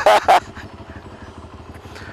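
CFMoto 400NK motorcycle's parallel-twin engine idling at a standstill: a low, steady running. A man's voice is heard briefly at the start.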